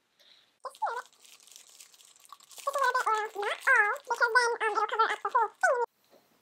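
A plastic bag crinkling and fake snow pouring into a clear plastic ball ornament, a soft rustling hiss. From about halfway a girl's high, sing-song voice vocalises without words and becomes the loudest sound.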